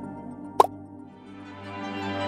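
Background music fading down, with a single water-drop 'plop' sound effect, a short quick upward pitch sweep, about half a second in. New music swells in near the end.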